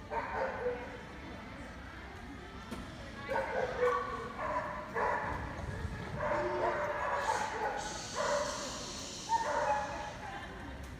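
A dog barking in repeated bursts, several times through the stretch.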